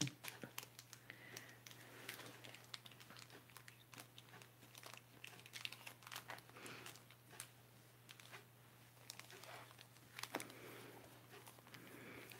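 Faint crinkling and rustling of foil Pokémon booster pack wrappers being handled and shuffled in the hands, in scattered small crackles.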